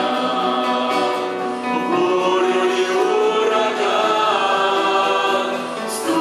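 A mixed group of men and women singing a Russian-language worship song in harmony, with long held notes, accompanied by piano and electric guitar.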